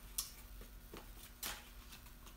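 Vinyl skin sheets on their backing paper being handled: a few short, faint crinkles, the clearest just after the start and about a second and a half in.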